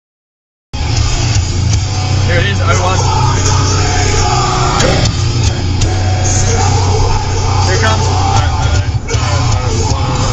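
Silence for under a second, then the steady low rumble of a car cabin at highway speed, with rock music playing over it.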